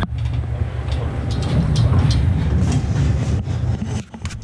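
Manual pallet jack rolling over a trailer's wooden floor: a steady low rumble from the wheels with scattered clatters and knocks.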